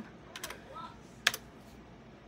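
Laptop keyboard keys clicked a few times, with one sharp, louder click just over a second in.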